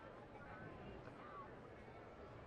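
Near silence: the faint murmur of a ballpark crowd, with a few distant voices.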